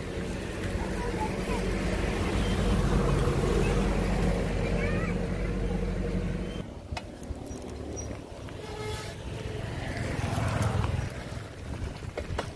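A motor vehicle's engine running steadily close by, cutting off abruptly about halfway through, followed by quieter road and rolling noise that swells again near the end.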